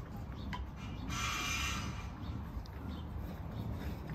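Wooden pump drills being worked by hand: a brief scraping hiss about a second in and a few faint light clicks, over a low rumble.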